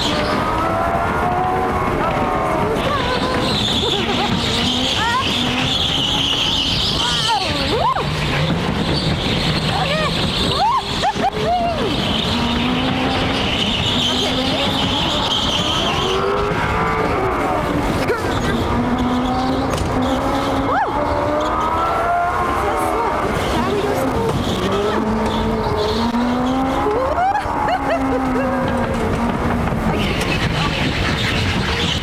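Electric indoor go-karts racing around the track, their motor whine rising and falling as they speed up and slow down through the corners. There are two stretches of tyre squeal lasting a few seconds each.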